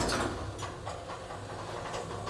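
Old Schindler traction elevator running: a steady low machine hum with irregular clicks and rattles, starting suddenly.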